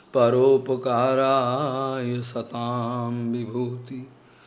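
A man's voice chanting a Sanskrit verse in a sung, melodic recitation: three long phrases on held, wavering notes, the last breaking off just before the end.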